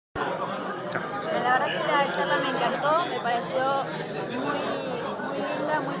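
Many voices talking at once: the steady chatter of a crowded room.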